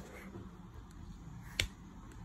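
A single sharp click about one and a half seconds in as the lid of a cardboard box is opened, otherwise quiet.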